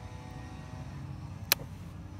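A single sharp click about one and a half seconds in, as the lever of a Honda Odyssey sliding-door latch is pushed over against its blue microswitch, the switch that tells the van the door is shut. A low steady rumble runs underneath.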